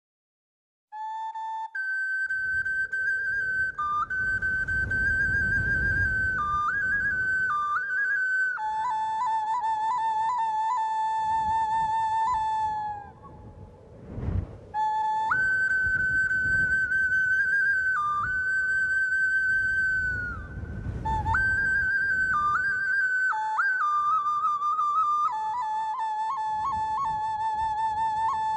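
Solo flute playing a slow melody of long held notes with vibrato, moving between a higher and a lower note, over a low rumble. It starts about a second in and breaks off briefly about halfway through, with one short knock in the gap.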